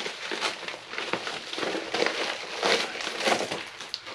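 Crinkling and rustling of a padded mailing envelope being handled and reached into as its contents are pulled out.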